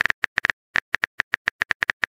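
Keyboard tap clicks of a phone texting app, a rapid, uneven run of short clicks, about seven a second, as a message is typed out letter by letter.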